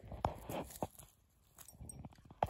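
A goat grazing close by, tearing at short grass: a few quick, crisp snaps in the first second, then a pause and a couple of fainter ones near the end.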